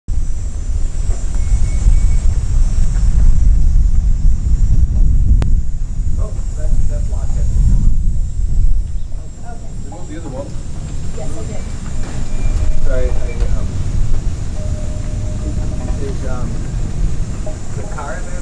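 A low, uneven rumble throughout, with people's voices talking faintly from about six seconds in and a single sharp click about five seconds in.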